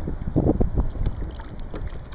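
Wind rumbling on the microphone over water moving along a boat's hull, with a few short splashes from a small hooked shark at the surface.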